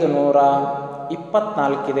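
A man's voice speaking Kannada slowly, in a drawn-out, sing-song way with long held vowels, like numbers being read aloud.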